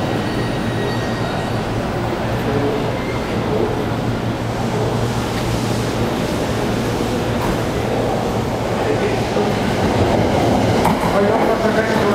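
Electric commuter trains at a station platform: a steady low hum and rumble, growing louder near the end as a JR Yamanote Line train runs in alongside the platform.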